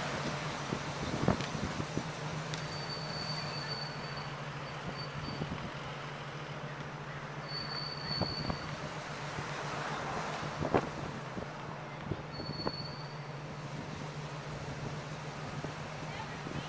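Road and engine noise in a moving car: a steady rumbling rush over a constant low hum, with occasional knocks from bumps and a few brief, faint high squeals.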